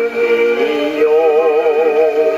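A 78 rpm shellac record of a Japanese popular vocal duet played acoustically on an English Columbia No. 201 portable gramophone: a singer holds one long sung note over the orchestral accompaniment.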